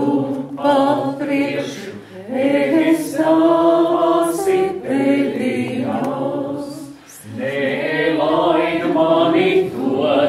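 A group of voices singing a Latvian folk song unaccompanied, in long phrases with short breaks for breath about two and seven seconds in.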